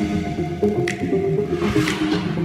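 Runway music: a line of short, quickly changing notes over a bass, with a sharp percussive hit about once a second.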